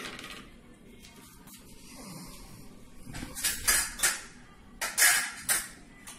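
Steel kitchenware clinking and clattering: a few sharp metal knocks about three and a half seconds in and again about five seconds in, with quiet between.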